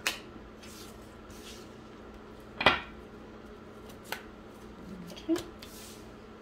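Tarot cards being dealt one by one onto a wooden table: about four sharp slaps and taps, the loudest a little before halfway.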